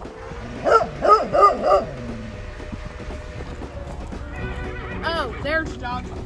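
A dog barking four times in quick succession, about a second in.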